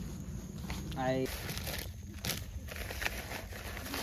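Dry concrete mix pouring from a paper bag into a fence-post hole: a gritty hiss with rustling of the bag and a few sharp clicks, after a brief voice about a second in.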